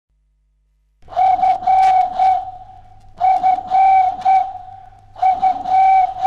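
A whistle imitating a dove's cooing: three phrases of four or five short notes, all on one pitch, starting about a second in, over the low hum of an old 78 rpm record.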